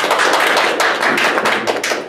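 A small group of people applauding, a dense run of hand claps that begins to thin out near the end.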